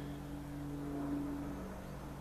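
A steady low machine-like hum with a light hiss behind it. Its highest tone fades away about one and a half seconds in.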